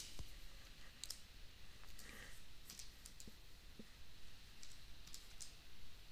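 Faint, irregular key clicks, a dozen or so short taps spread out with pauses between them, as a sum is keyed in and worked out.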